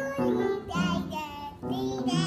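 A young child singing in short, wavering phrases while pressing upright piano keys, with held piano notes sounding under the voice.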